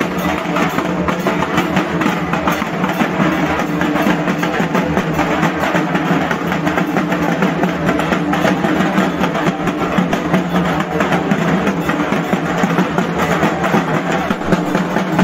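Several dhak drums, large barrel drums beaten with thin sticks, playing together in a fast, unbroken rhythm of strokes.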